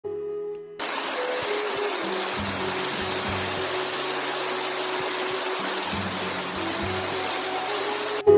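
Steady rush of water from a small waterfall cascading over rocks, starting abruptly about a second in, with soft music underneath.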